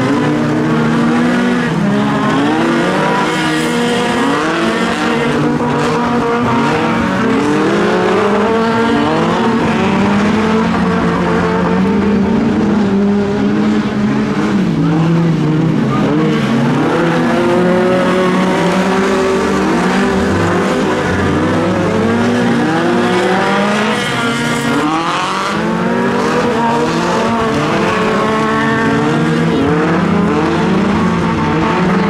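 Several stock-car engines racing on a dirt oval, overlapping one another. Their pitches keep rising under acceleration and dropping off again as the cars run through the turns, a continuous loud engine noise.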